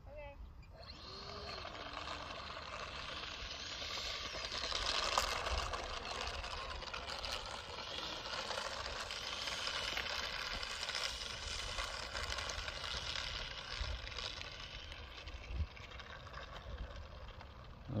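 Electric ducted fan of an FMS F-35 Lightning V2 64 mm RC jet running on the ground while the jet taxis: a whine of several steady tones over a rushing hiss that comes in about a second in and grows louder around four to five seconds in.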